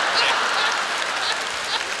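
Studio audience applauding, easing off slightly towards the end.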